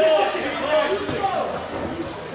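Voices of people around a kickboxing ring talking and calling out, with a single thud about a second in as a blow lands.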